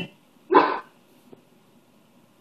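Nine-month-old bullmastiff giving a single short bark about half a second in.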